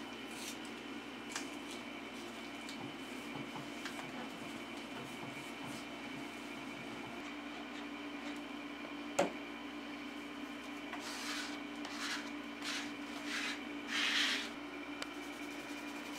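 Steady hum in a small room, with a single sharp click about nine seconds in. Several short rustles follow in the last few seconds, the loudest near the end, as a sheet of paper is handled at the printing platen.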